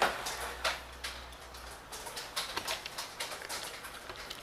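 Scattered light clicks and taps from a digital platform scale's plastic display unit and its cord being handled as the scale is switched on.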